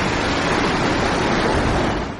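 Rough sea surf breaking against rocks: a steady, loud rush of waves.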